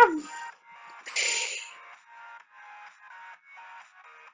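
Quiet background music in short choppy pulses, about two a second, with a brief loud noisy burst about a second in, like a sound effect.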